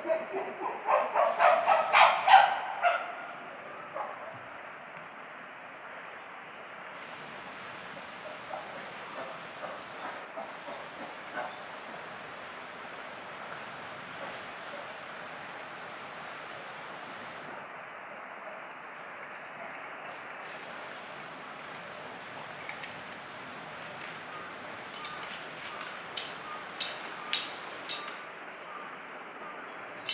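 Chimpanzees calling: a rapid series of loud hooting calls that builds to a peak in the first three seconds. Steady background hiss follows, with a few short sharp calls or knocks near the end.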